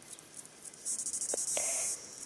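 An insect's high-pitched, rapidly pulsing trill starts about a second in, with two faint clicks during it.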